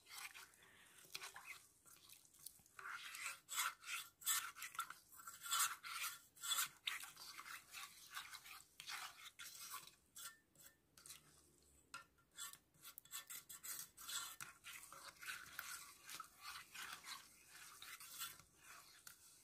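A small plastic spoon stirring a liquid drink mixture of water, lentils, lemon slices, cinnamon and cumin in a small saucepan, faintly scraping against the pot in many quick, irregular strokes. The stirring is meant to work the cinnamon into the water, since it does not mix in easily.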